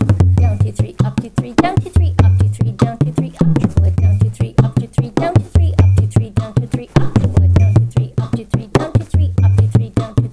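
Bodhrán played with a tipper in a 9/8 slip-jig rhythm at 100 beats per minute: a rapid, even stream of strokes with down-up triplet figures, punctuated every second or two by deep, resonant bass notes. One of them bends upward in pitch about three seconds in.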